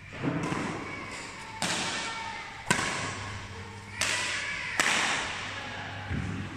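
Badminton rackets hitting a shuttlecock in a rally: about five sharp hits roughly a second apart, each echoing in a large hall.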